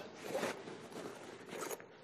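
Quiet rasp of a zipper on the front compartment of an eBags Professional Slim laptop backpack being worked open by hand.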